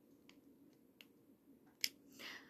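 A quiet room with a few faint, short clicks and one sharper click near the end.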